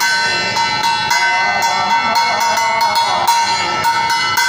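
A puja bell rung rapidly and steadily during an aarti, about three to four strokes a second, its ringing tones held throughout. Beneath it a man's voice sings the aarti through a microphone.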